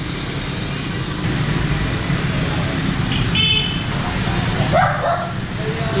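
Street traffic of passing motorbikes, a steady low engine rumble, with a short horn toot about three and a half seconds in.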